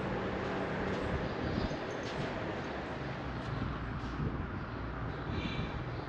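Steady background rumble and hiss with a low hum, and a brief high-pitched chirp near the end.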